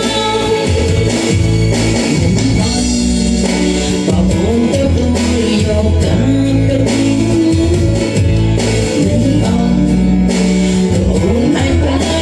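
A woman singing into a handheld microphone over backing music with guitar.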